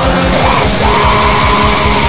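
Raw black metal: rapid drumming under a dense wall of distorted guitar, with a harsh yelled vocal that rises into a long held note about a second in.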